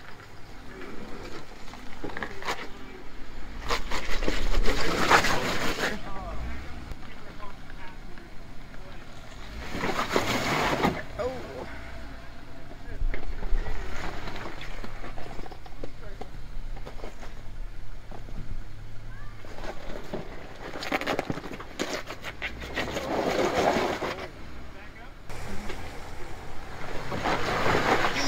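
Jeep Wrangler Rubicon crawling over wet rocks: a low engine rumble with several louder surges of a second or two each as it is driven up and over the rocks, with people talking in the background.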